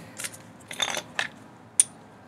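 Light metal clicks and a short scrape, with one sharp ringing tick near the end: the oil drain plug being put back into a Briggs & Stratton lawnmower engine by hand.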